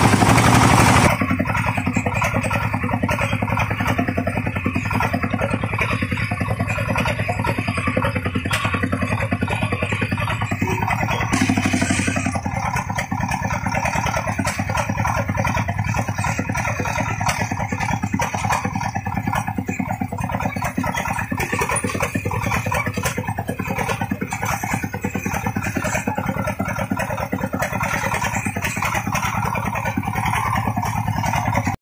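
Single-cylinder diesel engine of a công nông farm truck running steadily under way, with an even, fast chugging beat.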